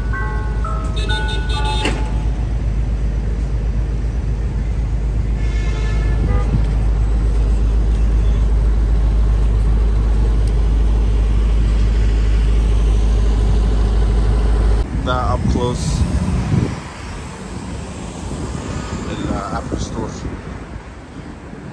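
Ice cream truck's chime jingle playing a stepped tune that stops about two seconds in, followed by a steady deep rumble of traffic. The rumble cuts off sharply about fifteen seconds in, leaving quieter street noise.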